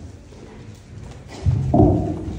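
Footsteps of high heels and dress shoes on a hollow wooden stage, then a sudden loud thump about a second and a half in, with a brief pitched sound after it, as a microphone changes hands.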